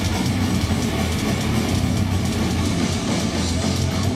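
Death/thrash metal band playing live: distorted guitars, bass guitar and drum kit in a dense, steady, loud wall of sound.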